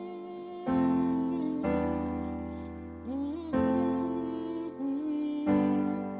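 Digital piano on an acoustic grand piano voice playing slow chords: four chords struck about two seconds apart, each left ringing and fading. A voice softly sings the melody over them.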